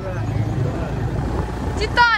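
Motorcycle engine running steadily as the bike rides along: a low, even rumble mixed with wind rush.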